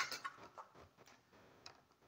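Faint clicks of a hard plastic blister pack being handled: a few light ticks in the first second and one more near the end.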